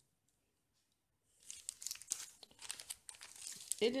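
Crinkling and rustling of the clear plastic packaging on sheets of alphabet stickers as they are handled and swapped, starting after about a second of near silence.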